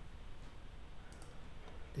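Computer mouse clicking: a couple of faint clicks a little over a second in, over a low steady room hum.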